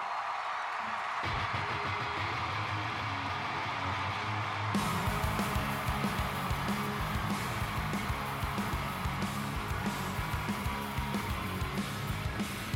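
A live punk rock band opening a song. A distorted electric guitar riff comes in about a second in, and drums and bass join with the full band at about five seconds.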